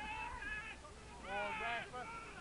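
Players shouting: two high-pitched shouts, the second and louder one about a second and a half in, an appeal for a penalty.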